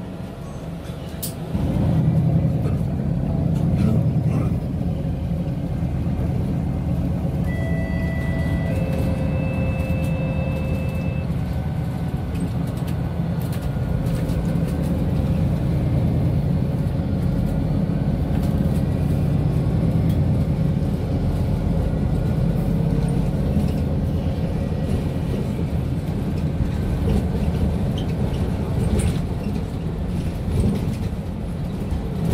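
Interior drone of a MAN A22 Euro 6 city bus's diesel engine and drivetrain, stepping up about a second and a half in as the bus pulls away, then running steadily. A few short steady tones sound about a third of the way through.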